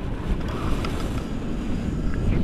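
Wind from the flight buffeting the camera microphone during a tandem paraglider flight: a steady low rumble.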